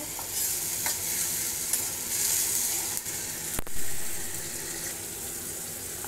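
Chopped tomatoes and onions sizzling in hot oil in a pan while a steel spoon stirs them, softening the tomatoes for a curry masala. There is one sharp click a little past halfway.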